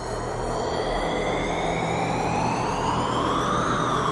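Instrumental song intro: a synthesizer tone with many overtones sweeps slowly upward over a steady bass, peaks near the end and begins to fall.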